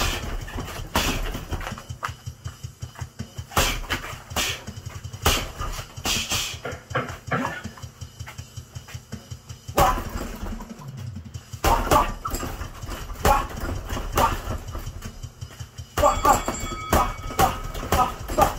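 Boxing gloves striking a hanging water-filled punching bag in quick, irregular flurries of punches.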